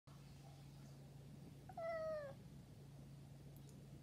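A domestic cat gives a single short, pure meow about two seconds in, its pitch sliding slightly down at the end. A faint steady low hum runs underneath.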